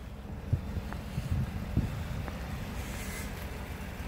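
Wind rumbling on the microphone, a steady low buffeting, with a few soft knocks.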